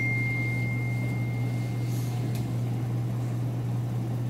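Steady low electrical or ventilation hum of the room, with a thin high-pitched tone that fades away about halfway through.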